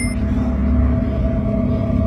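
Low, steady rumbling drone with sustained held tones, a dark ambient film score.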